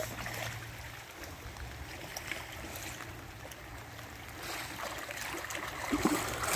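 Faint lapping of lake water, with splashing that grows louder near the end as a cream retriever wades into the shallows.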